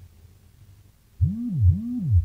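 Low synthesized sound effect: two identical smooth swoops, each rising in pitch and falling back within about half a second, beginning a little past halfway through.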